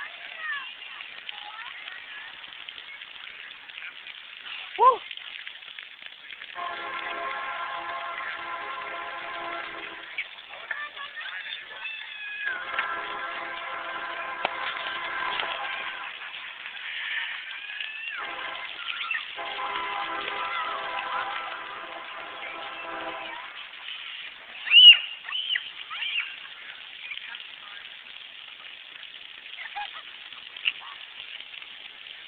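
Children's squeals and shrieks at a splash pad: one sharp cry about five seconds in and a louder one near the end. A steady droning tone with even overtones comes and goes in stretches of a few seconds through the middle.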